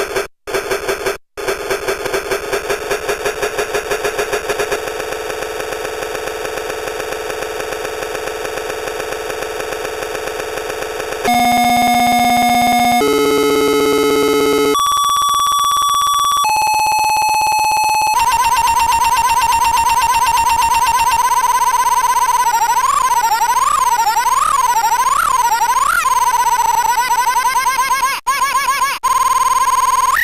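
Circuit-bent toy typewriter's sound chip giving out rapid, glitchy, rapidly retriggered electronic tones. About eleven seconds in it switches abruptly to a string of held single pitches that step to a new note every second or two. Later the pitch wobbles up and down, with two brief cut-outs near the end.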